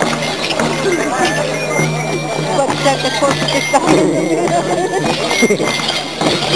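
Festive dance music with a crowd of many people talking and calling out over it.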